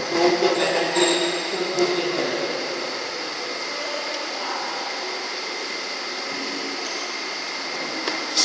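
Steady background noise of a large indoor sports hall, an even hum with no rhythm. Faint voices are heard in the first two seconds.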